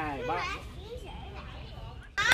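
Young children's voices: a loud call right at the start, then quieter chatter as they play.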